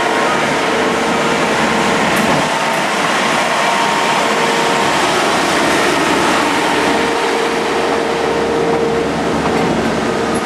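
Track maintenance machines running their engines as they travel along the rails in a convoy, the nearest one passing close by, making a steady, loud mechanical drone with a faint whine over it.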